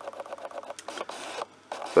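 Rapid run of faint mechanical clicks with a brief whir about a second in, from a small mechanism close to the microphone.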